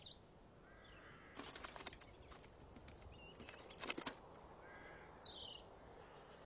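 Faint clicks and clatters of stones dropped by ravens into a water-filled perspex tube, in two short clusters about a second and a half in and about four seconds in, with a few faint bird calls.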